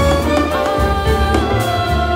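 Chamber jazz ensemble playing a steady, loud passage together: trumpet, saxophone, trombone and bass clarinet, a string quartet, vibraphone, piano, double bass and drum kit.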